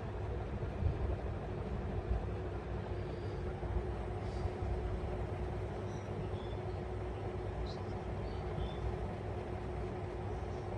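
Steady low rumble with a constant hum, and a few faint, short, high chirps from a cockatiel in the middle.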